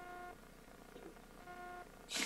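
Two faint electronic beeps, each about half a second long and about a second and a half apart, both on the same steady pitch.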